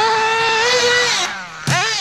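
Axial .28 nitro engine of a Hyper 7 Pro RC buggy running flat out at a steady high pitch. About 1.3 s in it eases off with the pitch falling, then revs up sharply again near the end.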